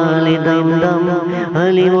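Man's voice chanting a naat, holding a long note over a steady vocal drone, the pitch stepping up about one and a half seconds in.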